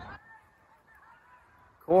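Quiet open-air football ground with faint, distant voices calling, then a man's loud spoken call of 'corner' near the end.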